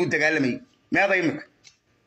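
Only speech: a man talking in two short phrases, the second ending about a second and a half in, followed by a pause.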